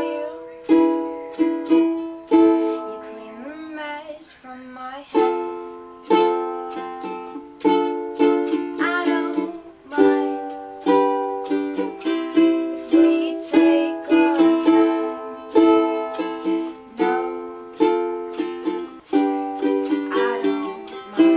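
Acoustic ukulele strummed in chords, each strum ringing out and fading before the next.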